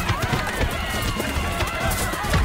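Many voices shouting and crying out at once over film background music, with a steady low rumble beneath.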